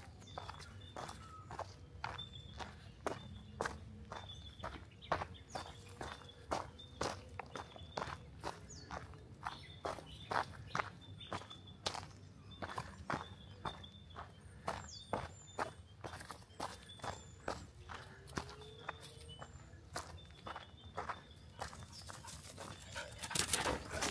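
Footsteps crunching on a dry track of dirt and fallen eucalyptus leaves, at a steady walking pace.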